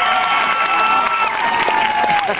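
A crowd of graduates cheering and applauding, with long, high-pitched screams held over dense clapping.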